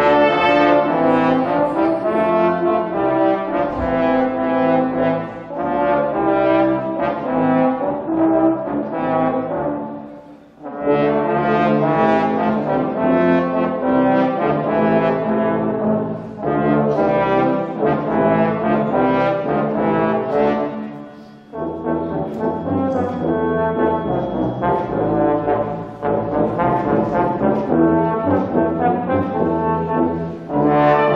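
Brass sextet of trumpet, trombones, euphonium-type horns and tuba playing a Christmas carol in full sustained chords. The music breaks off briefly between phrases about ten seconds in and again a little past twenty seconds.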